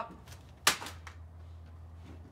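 A single sharp crack about two-thirds of a second in, over a faint low steady hum.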